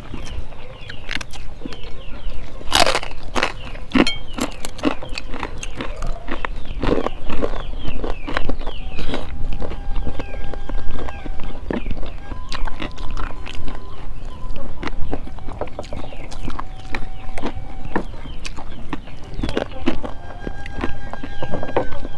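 Close-up eating sounds: chewing, mouth clicks and crunching as rice, curry and crackers are eaten by hand, in a rapid, irregular run of small crackles.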